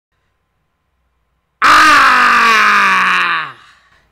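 A loud, drawn-out yell from a man's voice. It starts about a second and a half in, slides steadily down in pitch for about two seconds, then fades out.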